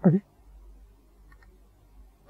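A man says 'okay', then, about a second and a half in, there are two or three faint, quick clicks as the lecture slide is clicked forward.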